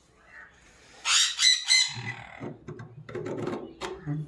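Parrot squawking: three loud, harsh screeches in quick succession about a second in, followed by softer, lower sounds.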